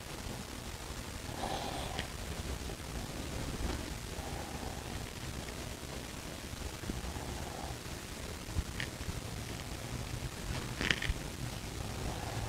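Quiet steady low hum of room background, with a few faint light clicks, the clearest about a second before the end.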